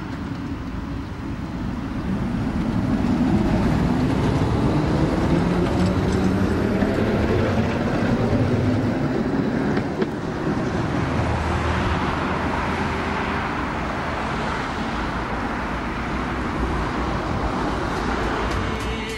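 RVZ-6 tram running with its electric traction motors whining, the whine rising in pitch over several seconds as it gathers speed. After a cut about ten seconds in, a steadier rumble of a tram running on its track, mixed with road traffic.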